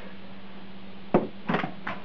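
Handling noise from a plastic pressure washer and its coiled power cord: one sharp knock about a second in, then a couple of softer clicks.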